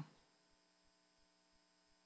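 Near silence with a faint steady electrical hum.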